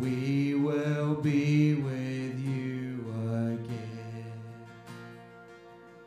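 A man singing a worship song in long held notes into a microphone, with acoustic guitar underneath. The sound fades down over the second half.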